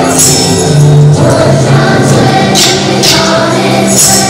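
Children's choir singing with instrumental accompaniment, and tambourines jingling in two short shakes, one near the start and one about three seconds in.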